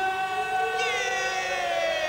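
Sustained synthesizer tones in an electronic dance track, sounding like a siren. One tone slides slowly upward, and about a second in the higher tones bend downward.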